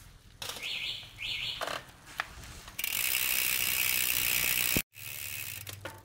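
Bicycle drivetrain turned by hand: the chain running over the 9-speed rear cassette and derailleur pulleys while the freehub ratchets. It comes in two short bursts and a click, then a louder steady buzz for about two seconds that cuts off suddenly.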